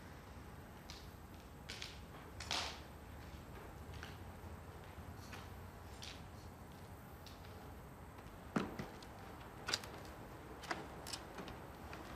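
Slow, unhurried footsteps on a gritty, debris-covered floor: a scattered series of short soft steps over faint background hiss, a few firmer ones near the end about a second apart.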